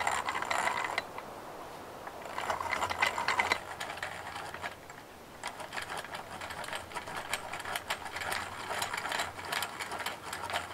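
Hand-cranked gear drill boring into a wooden log, its gears rattling and clicking as it is turned. Short spurts of cranking near the start and about two and a half seconds in, then steady cranking from about five and a half seconds on.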